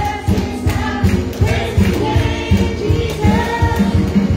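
A girl and a woman singing a gospel song together into microphones through a church PA, over instrumental accompaniment with a steady beat.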